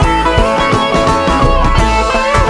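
Live band playing an instrumental passage with no singing: a semi-hollow electric guitar over bass and drums, with steady drum hits.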